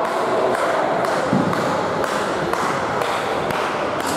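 Crowd noise echoing in a gymnasium, with a few dull thumps.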